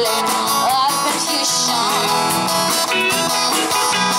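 A live pop-rock band playing: strummed acoustic guitar, electric guitar, bass guitar and a drum kit, with a woman singing over it through a PA.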